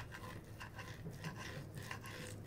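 Serrated steak knife sawing through a slice of grilled maminha (tri-tip) on a plate, a run of faint, short repeated strokes as the blade works through the crust.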